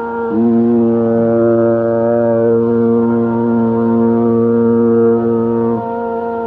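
A deep male Carnatic voice holds one long, steady low note for about five and a half seconds over a steady drone.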